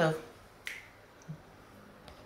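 A single sharp click about two-thirds of a second in, then faint room tone.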